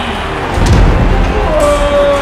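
A heavy, low thud about half a second in, as a rolling ball knocks over a small plastic toy figure, over background music.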